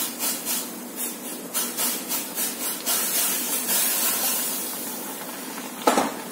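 Semolina poured slowly into a pan of boiling water, which hisses and bubbles as the grains land. The hiss is rough for the first few seconds, then smooths and fades toward the end.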